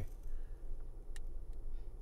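Vehicle engine idling as a low, steady rumble heard from inside the cab, with a single sharp click about a second in.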